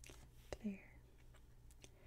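One softly spoken word in a woman's low, near-whispered voice, with a few faint sharp clicks around it; otherwise very quiet.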